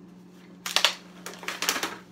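Clear plastic blister packaging crackling and crinkling as it is handled in the hands: a quick run of crackles starting about half a second in and lasting until near the end.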